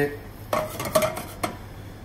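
Metal clanks of a stainless steel saucepan and utensils on a gas range: three sharp knocks about half a second apart, each with a brief ring.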